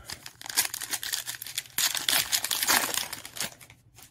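Crinkling of a trading-card pack wrapper as it is torn open and handled, a dense crackle that is loudest in the second half.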